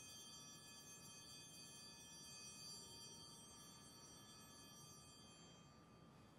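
Altar bells ringing faintly at the elevation of the consecrated chalice: a cluster of high, bright bell tones that hang on and fade out near the end.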